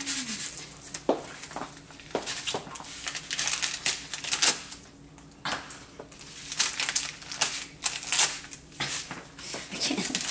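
Wrapping paper and small candy packets crinkling and tearing by hand as a small gift is unwrapped, in quick irregular rustles with a short lull about halfway.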